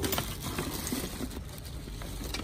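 Steady low background noise with a few faint clicks, with no distinct event standing out.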